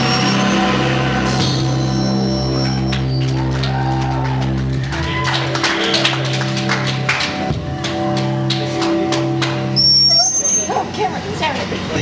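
Electric guitar chords left ringing and humming through the amplifiers as a rock song ends, with scattered clapping and cheering from a small audience.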